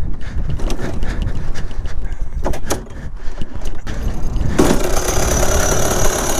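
Two-stroke 125cc shifter kart engine being restarted: a low rumble with a few knocks, then about four and a half seconds in the engine catches and runs loudly and steadily.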